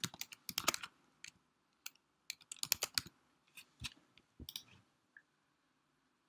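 Typing on a computer keyboard: irregular bursts of keystrokes entering a line of code, stopping about five seconds in.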